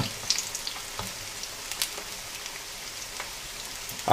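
Onion bhajis deep-frying in a pan of hot oil: a steady sizzle with a few small sharp pops scattered through it.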